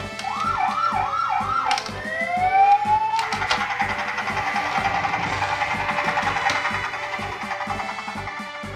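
Toy police helicopter's electronic sound effects: a siren warbles up and down four times, then a rising whine leads into a steady electronic whirr that fades near the end. Background music with a beat plays underneath.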